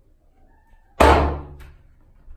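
A single loud bang against a door about a second in, dying away over about half a second.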